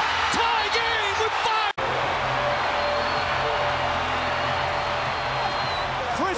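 Arena crowd roaring after a game-tying three-pointer, with a man shouting over it. The sound cuts out for an instant under two seconds in, then the crowd roar carries on steadily with a faint held tone in it.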